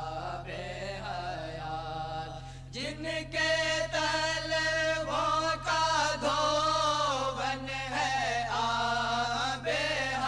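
Male voice reciting a naat, an Urdu devotional song in praise of the Prophet, in long wavering sung lines that grow louder about three seconds in. A steady low hum runs underneath.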